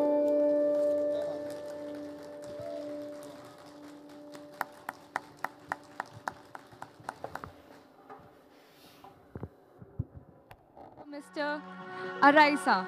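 Santoor strings ringing on and fading after the final note, then a short run of handclaps from one or two people. Near the end, recorded music starts.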